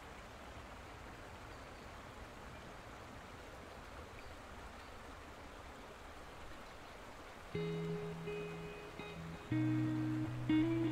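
Faint steady background noise, then acoustic guitar music starting about seven and a half seconds in with a held chord, and a second, louder chord near the end.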